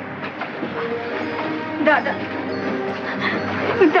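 Film soundtrack with sustained held tones slowly building in loudness, and a voice calling "Dada" about two seconds in.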